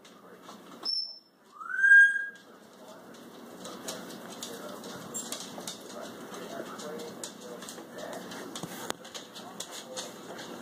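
A short high chirp, then a louder rising whistle-like call about two seconds in, followed by continuous crunching and clicking as a dog eats dry kibble at its bowl.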